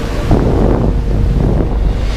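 Wind buffeting the microphone as a loud low rumble, with ocean surf washing around the rocks.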